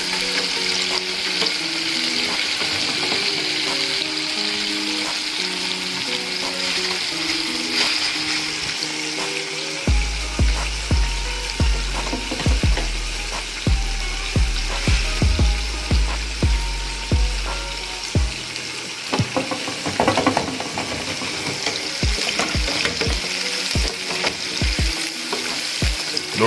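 Breaded chicken tenders deep-frying in hot oil in an electric deep fryer on their second fry, a steady sizzle. Background music plays over it, with a bass beat coming in about ten seconds in.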